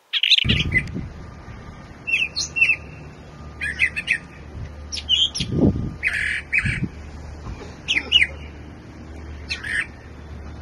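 Brown thrasher singing: short, varied phrases of quick notes, about seven of them with gaps of around a second between, over a low background rumble.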